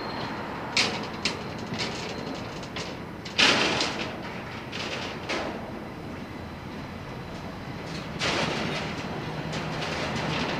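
Athens tram approaching along its track, a steady rolling rumble that grows as it nears. Several short hissing bursts are scattered through, the longest about three and a half seconds and eight seconds in.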